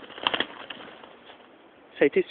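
A partridge (ruffed grouse) fluttering its wings in a quick flurry about a quarter second in, followed by a few faint ticks.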